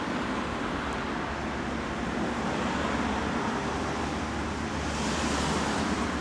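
Steady city street traffic noise, with a brighter hiss swelling briefly near the end.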